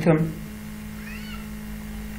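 A steady low hum, with a faint, brief call that rises and falls in pitch about a second in.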